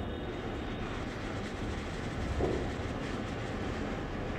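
Steady low rumbling background noise, with no ball strikes.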